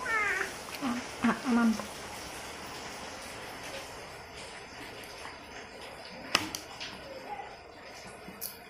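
An infant making a few short babbling, cooing sounds in the first two seconds, the first one falling in pitch. A single sharp click about six seconds in.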